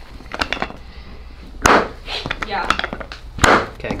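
A few short cracks and thuds during a chiropractic adjustment of the foot and ankle, with faint clicks early on and the two loudest about two seconds apart, the second near the end.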